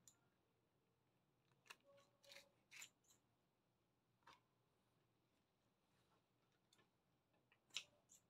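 Near silence broken by a few faint, short clicks and snips, the sharpest near the end: kitchen scissors trimming the tough base off soaked wood ear mushrooms, and wet fungus being handled in a stainless steel pot.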